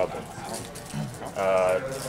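A man's drawn-out hesitation 'uh', held on one pitch for about half a second near the end, after a second or so of low background sound.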